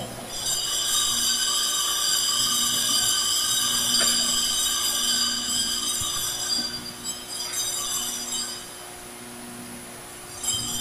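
A bell ringing with a steady, high metallic tone for about seven seconds, then fading out, signalling that the Mass is about to begin.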